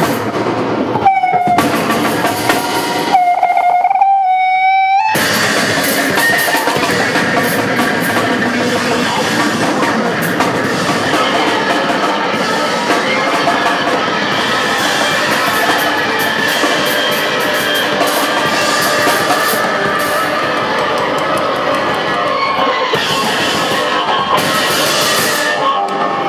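Live rock band playing, with drum kit, electric bass and guitar. In the first five seconds a single held note rings out twice, rising slightly, between breaks; from about five seconds in the whole band plays on steadily.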